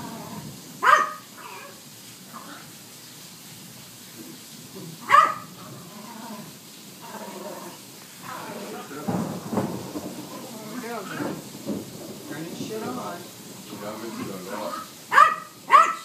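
A dog barking, anxious during a thunderstorm. There are single sharp barks about a second in and again about five seconds in, then a quick run of barks near the end.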